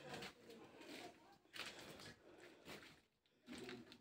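Near silence with a few faint, short scuffs.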